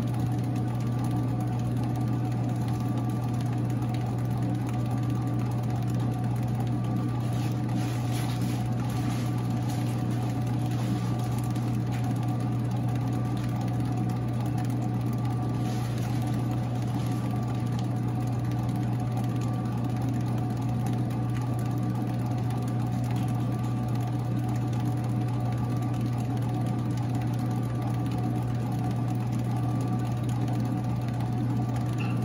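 Large floor-standing commercial planetary mixer running steadily, mixing batter in its stainless-steel bowl. Its motor and gearbox give a constant low hum with a faint steady whine above it.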